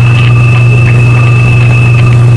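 A loud, steady low hum with a thin, high-pitched tone held above it, unchanging throughout.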